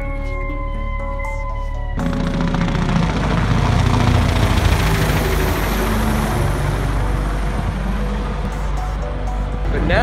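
Helicopter flying over, a steady engine-and-rotor noise that comes in suddenly about two seconds in, swells and slowly eases off, under background music.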